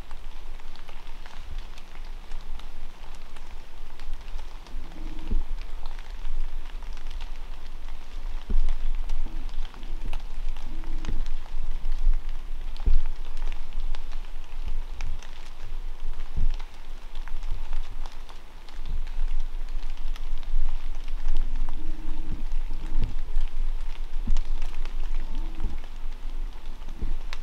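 Water drops pattering steadily on dry fallen leaves, from light rain or fog dripping off the trees, with many scattered sharper ticks and a low steady rumble underneath.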